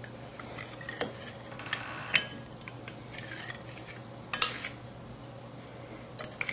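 Metal spoon stirring ground spices into vegetable oil in a ceramic bowl, with a few sharp clinks of the spoon against the bowl, the loudest about four and a half seconds in.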